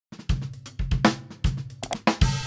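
Drum kit being played: heavy bass drum and snare hits about twice a second with cymbals ringing over them, and a quick flurry of strokes near the end.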